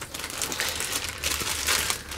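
Thin clear plastic bag crinkling as a wrapped robot-vacuum docking station is lifted out of its box and handled: a dense, continuous run of crackles.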